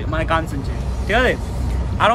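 Steady low rumble of a train carriage heard from inside a first-class compartment, under men's voices.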